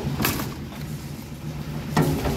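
Steady engine hum of the site's concrete mixing and hoisting machinery. There is a short metallic scrape shortly after the start and a knock near the end from steel wheelbarrows being handled on the slab.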